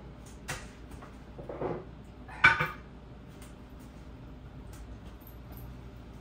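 Light kitchen handling noises: a soft click, a brief rustle-like sound, and one short, sharper clink about two and a half seconds in, then quiet room tone.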